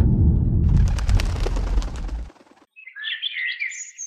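A deep rumble fades out a little over two seconds in. After a brief gap, birds chirp with quick rising and falling whistles until the end.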